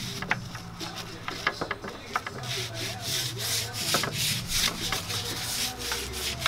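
Stiff hand brush scrubbing a greasy Nissan 240SX subframe wet with soapy Zep degreaser, in quick repeated scratchy strokes that come faster and stronger from about halfway through.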